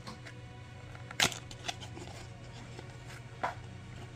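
Cardboard soap box being handled and opened, the bar sliding out of its paper sleeve: soft paper scrapes with a sharp crinkle about a second in and a smaller one near the end, over a faint steady hum.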